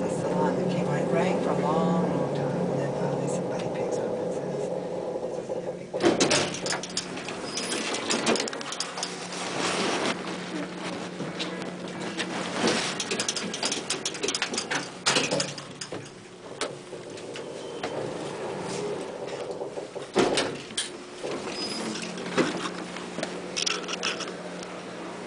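Otis traction elevator car running with a steady hum as it arrives at the floor. About six seconds in comes a sudden louder noise as the doors open, followed by scattered knocks and clicks of movement out of the car.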